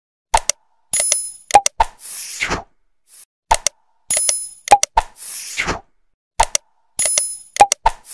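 Animated subscribe-button sound effects: sharp mouse-style clicks and pops, a short bell ring and a falling whoosh, the set repeating about every three seconds.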